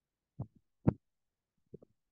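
Two short dull thumps, the second louder, then two faint ones near the end, heard through a video-call microphone that cuts to dead silence between them.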